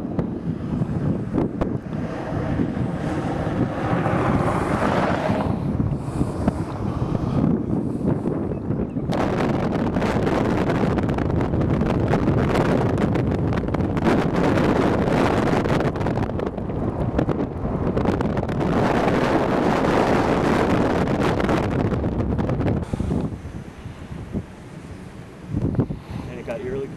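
Strong storm wind blowing across the microphone as a steady, rough rush of noise, with an abrupt change in its character about nine seconds in.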